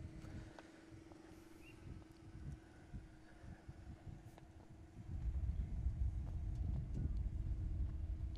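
Outdoor field ambience picked up by a camera microphone, with a steady low hum. About five seconds in, a louder, uneven low rumble of wind buffeting the microphone sets in.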